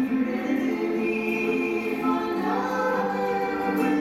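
Two women singing a slow church song together, holding long notes that step from pitch to pitch.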